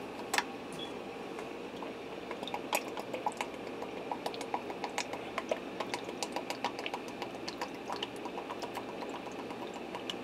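Worcestershire sauce being poured from its bottle into a measuring cup: a run of small, irregular clicks and glugs from about two seconds in until near the end.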